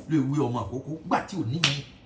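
A man speaking, his voice rising and falling in pitch. There is one sharp click about one and a half seconds in.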